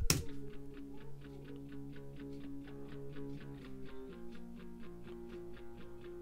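Electric guitar part playing back from the DAW: held chord tones under a steady rhythm of picked notes, about five a second, with a change of chord about four seconds in. This is the guitar track playing with its recorded panning automation moving it toward the rear of the surround field.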